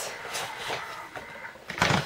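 Handling noise of a small product box being picked up: faint rustling and scraping, then a single knock near the end.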